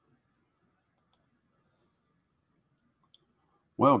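Two faint computer mouse clicks about two seconds apart over near-silent room tone, then a man's voice starts near the end.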